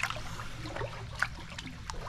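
Shallow creek water lapping and trickling, with a few small sharp splashes.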